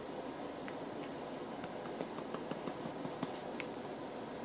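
Spice jar of ground cinnamon being shaken over bread in a foil pan: faint, irregular small ticks and taps over a steady background hiss.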